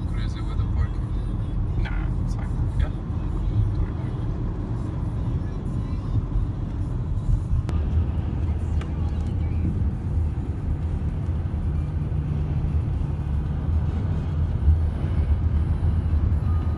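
Steady road noise of a car driving at highway speed, heard from inside the cabin: a low rumble of engine and tyres, with a steadier low hum settling in near the end.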